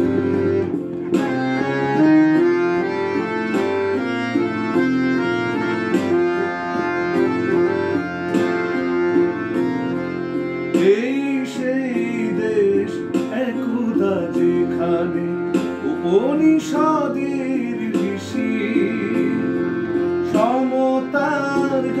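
Monoj Kumar Sardar & Bros harmonium, its bellows pumped by hand, playing a stepping melody over held reed notes. A man's singing voice comes in strongly about halfway through, singing in Bengali over the harmonium.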